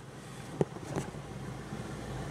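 Heard from inside the cabin: a 2009 Smart fortwo's small three-cylinder engine running with the air-conditioning blower on, a low steady hum that grows slightly louder toward the end. Two light clicks come about half a second and a second in.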